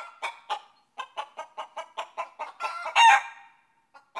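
Short, repeated bird calls, about four a second, then one longer, louder call about three seconds in.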